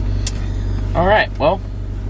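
Honda ute's engine idling with a steady low hum, heard from inside the cabin.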